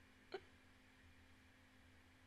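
Near silence with a faint steady low hum, broken once, about a third of a second in, by a single short throat or mouth sound made close to the microphone.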